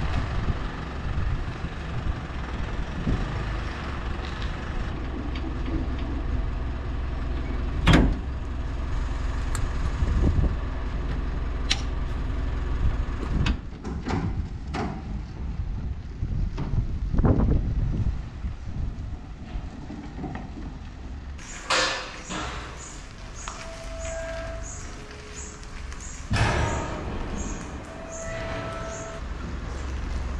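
Pickup truck towing a twin-axle livestock trailer, its engine running with a steady low rumble, with a few sharp knocks along the way.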